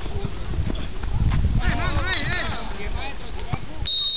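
Excited shouts of "¡Ay!" from a spectator: one at the start, then a quick run of several about a second and a half in. The calls are over a low rumble of wind and handling on the microphone.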